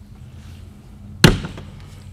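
The exterior storage compartment door of a Keystone Passport 268BH travel trailer slammed shut once, about a second in, with a single sharp bang.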